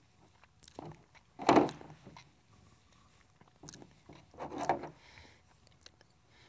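A leather tie string being pulled out of a slot concho with needle-nose pliers: a few short rubbing sounds and small clicks of leather and metal, the loudest about a second and a half in, with near quiet between.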